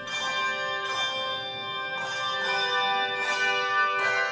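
Handbell choir playing: bells struck one after another, about every half second to a second, each note ringing on and overlapping into sustained chords.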